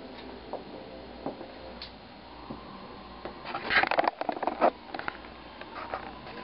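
Brown paper substrate crackling and rustling under a boa's shifting coils as it constricts mice. The crackling comes as a dense burst about halfway through, with scattered light clicks either side.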